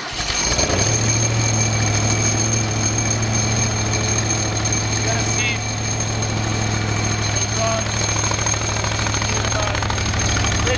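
Kohler Command PRO 30 air-cooled V-twin engine catching on the starter and then running steadily on half choke, a cold start. A steady high whine sits above the engine note.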